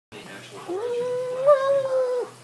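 A dog giving one long, steady howling whine that starts under a second in.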